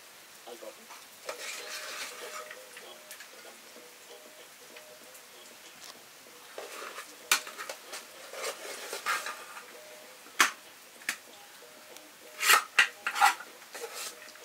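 A metal serving spoon scraping and clinking against steel cooking pots and bowls as cooked rice is scooped out and served. The scrapes are scattered clinks, with a quick run of sharp clanks near the end that are the loudest sounds.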